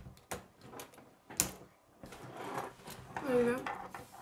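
Plastic K'nex rods and connectors being snapped together by hand: a few sharp plastic clicks, the loudest about a second and a half in, followed by handling rustle.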